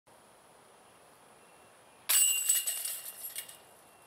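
A disc flies into the steel chains of a disc golf basket about two seconds in: a sudden chain clash, then the chains jingle and rattle as they settle over about a second and a half.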